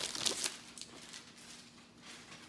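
Plastic sleeve crinkling briefly as a rolled diamond-painting canvas is handled, then quiet room tone with a faint steady hum.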